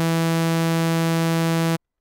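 Sawtooth wave from the Serum software synthesizer holding one steady note, rich in both even and odd overtones, then cutting off suddenly near the end.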